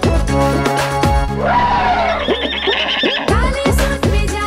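Upbeat instrumental music from a children's song; about a second in the drum beat drops out and a cartoon horse whinny sounds over a held note, then the beat comes back near the end.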